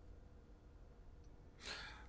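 Near silence with low room tone, then a short breath near the end.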